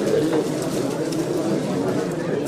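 Steady hubbub of many people talking at once, indistinct overlapping voices.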